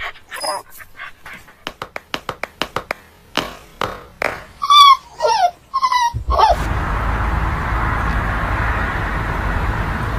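A dog play-fighting with a cat: a run of quick clicks and scuffs, then several short whines and yelps that bend in pitch, loudest about five seconds in. About six and a half seconds in, the sound cuts to a steady hiss.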